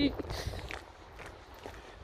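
A woman's laugh trails off right at the start, followed by quiet footsteps walking on pavement.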